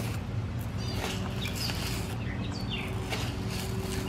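Birds chirping: short, high, falling notes every second or so, over a steady low hum.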